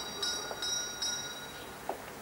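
Doorbell jangling: a small high-pitched bell struck over and over, about two to three strikes a second, dying away after about a second and a half. A single short click near the end.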